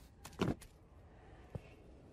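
A few faint, short clicks and knocks, the loudest about half a second in and another about a second later, over a low hiss.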